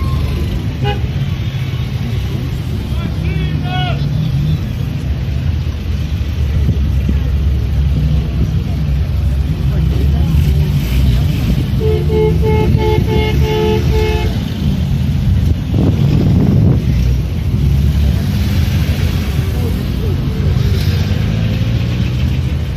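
Low engine rumble of vintage Soviet cars driving slowly past. Around the middle, a car horn gives a series of short two-tone toots lasting about two and a half seconds.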